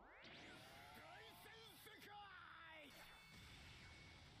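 Faint anime soundtrack: a quick rising whoosh sound effect of a sword slash at the start, followed by a character's voice speaking quietly for a couple of seconds.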